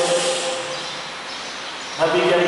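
A man's held, chanted note over a microphone tails off in the first half second, followed by a pause with only a low background hiss and ambience.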